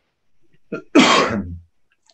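A person clearing their throat once, about a second in, after a short silence.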